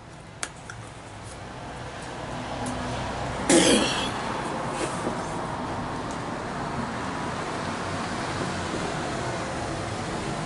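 Passing street traffic: vehicle road noise swells over the first few seconds and then holds steady. There is a brief cough about three and a half seconds in, and a small click just after the start.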